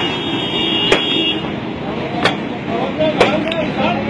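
Forklift engine running, with several sharp knocks and people talking.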